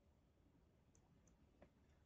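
Near silence with a few faint computer keyboard key clicks as the last letters of a word are typed.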